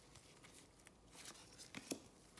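Near silence, with a few faint clicks and rustles of trading cards being handled, the clearest near the end.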